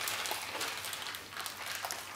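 Faint crinkling and squishing of a plastic zip-lock bag being squeezed and kneaded by hand to mix the milk and condensed milk inside.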